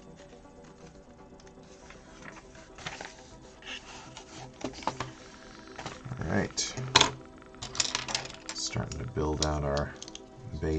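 Plastic Lego pieces clattering and clicking as hands rummage through a pile of bricks and plates. The clicks start sparse and grow denser and louder in the second half, the sharpest about seven seconds in.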